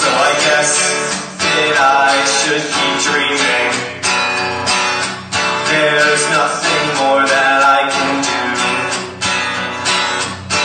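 Acoustic guitar strummed in a steady rhythm during an instrumental passage of a song, with a strong downstroke about every 1.3 seconds and lighter strums between.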